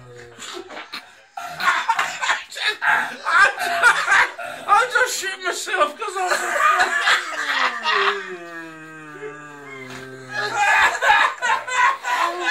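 Loud laughter, then about eight seconds in a man's long low call voiced into the neck of a plastic Coca-Cola bottle, an imitation of a red deer stag's rutting roar, sliding steadily down in pitch over about two and a half seconds.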